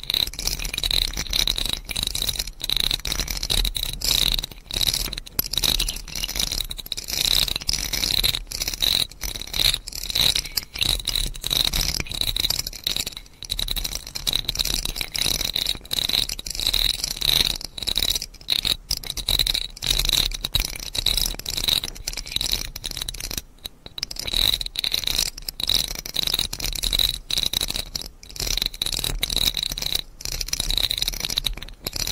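Close-miked ASMR trigger sounds: a fast, continuous scratchy rattle that keeps breaking off for split seconds and rising and falling in level.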